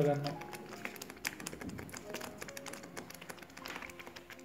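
Thick tomato sauce simmering in a pan: faint, irregular small pops and clicks of bubbles bursting.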